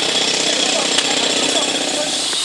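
A motor vehicle engine running steadily, with a rapid, even pulsing note.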